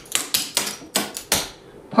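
Metal clogging taps on shoes striking a wooden dance floor in a quick run of about six sharp clicks as a rocking-chair clogging step is danced, then stopping about a second and a half in.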